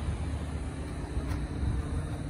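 Low, steady outdoor background rumble with a faint hum, and no distinct event.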